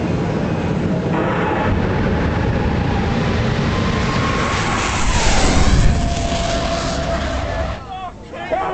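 Jet car running at full power down the drag strip: a loud, steady roar with a high whine that drops in pitch about five to six seconds in, when it is loudest, then falls away just before the end.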